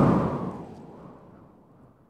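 Logo-reveal sound effect: a deep, noisy whoosh or boom that hits suddenly and dies away over about two seconds.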